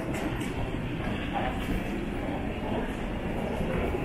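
Small plastic suitcase wheels rumbling steadily over a hard tiled floor, along with other wheeled luggage rolling nearby.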